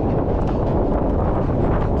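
Wind buffeting the microphone of a helmet-mounted camera, a steady rushing noise strongest in the low end.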